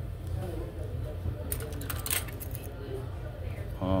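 Plastic cutlery in its wrapper being handled and opened: about a second of crinkling and clicking near the middle.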